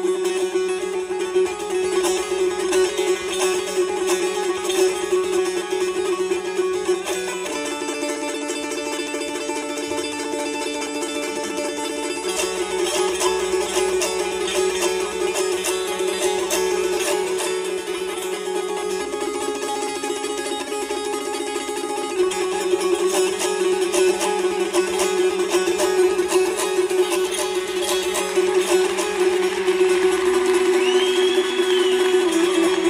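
Long-necked plucked lute played with fast, steady strokes over a held, droning note. The tune moves to higher notes about a quarter of the way in and comes back to the opening drone about three-quarters through.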